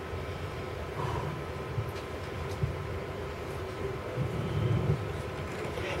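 Low, steady room background noise with a faint steady hum or whine and no distinct events.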